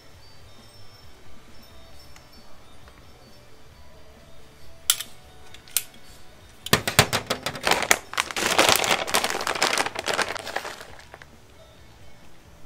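Plastic bag of shredded cheese crinkling and rustling as it is handled and opened: a dense run of crackles lasting about four seconds in the second half, after two single clicks.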